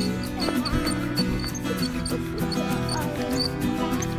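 Background music with sustained tones over a steady, ticking beat.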